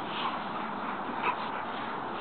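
Young Rottweiler giving two brief whimpers, the second one louder, over steady background hiss.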